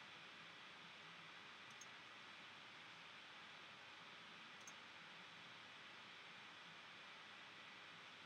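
Near silence: faint steady hiss, with two faint computer mouse clicks, about two seconds in and near five seconds in.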